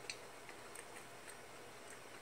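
Faint, irregular soft clicks of someone chewing shrimp with the mouth closed.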